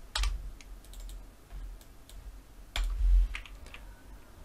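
Clicks of a computer mouse and keyboard while editing a drawing. The clicks come in two short clusters, just after the start and about three seconds in, with dull thumps on the desk; the loudest comes about three seconds in.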